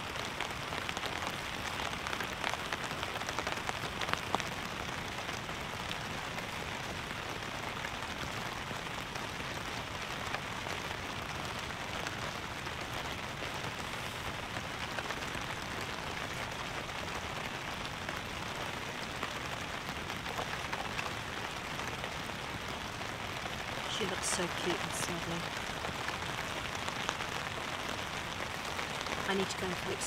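Steady rain falling on a tarp shelter overhead, an even patter throughout.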